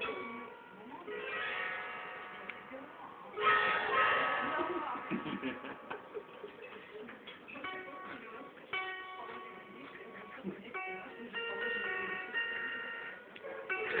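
Small rectangular wooden gusli being strummed and plucked: a strum early on, a louder full strum about three and a half seconds in, then single plucked notes and short chords that ring on.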